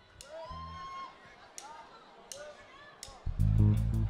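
Live soul band intro: a few separate electric guitar notes, bent in pitch, over a bass note, then the full band with bass comes in loudly about three seconds in.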